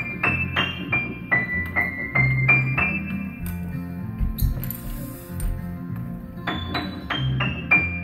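A child playing a simple melody on the piano, one treble note at a time over low bass notes, about three notes a second. Around the middle the playing stops for about two seconds with a rustle and a low thump, then the notes start again.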